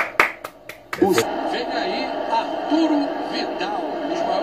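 A man clapping his hands, about five quick, sharp claps within the first second, applauding a goal.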